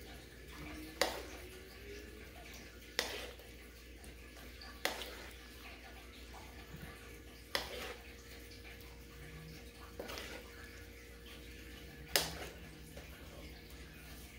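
Wooden spatula knocking and scraping against a nonstick pan and a ceramic plate as stir-fried chicken and pumpkin is served out: six sharp knocks a couple of seconds apart over a faint steady hum.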